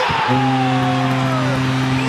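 Arena goal horn sounding a steady low blast for a Colorado Avalanche goal, over a cheering crowd.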